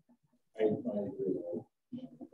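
Speech only: a person's voice drawing out a hesitant "I..." for about a second before going on.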